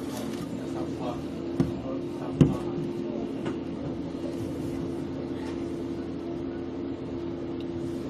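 Outdoor sports-field ambience during a soccer match: a steady low hum with faint voices in the distance, broken by two sharp knocks about a second and a half and two and a half seconds in, the second the louder.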